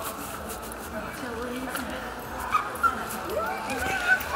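Mall ambience: background voices of shoppers and scattered footsteps and clicks, with two sharp knocks a little after halfway.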